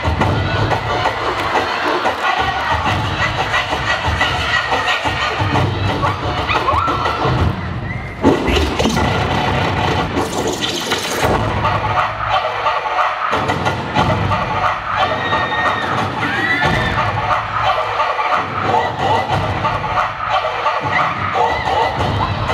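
Loud dance music with a heavy beat under a cheering, screaming crowd, with a sudden loud hit on the beat about eight seconds in.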